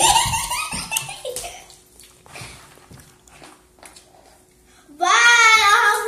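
Children's voices: talking in the first second or so, a quiet stretch, then a loud, high, drawn-out child's voice starting about five seconds in.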